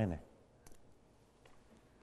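A man's spoken word trailing off in the first quarter second, then a quiet room with a few faint clicks, one about two-thirds of a second in and two more around a second and a half.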